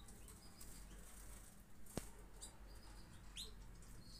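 Near silence: faint room tone with a few faint, short, high chirps scattered through it and a single soft click about halfway.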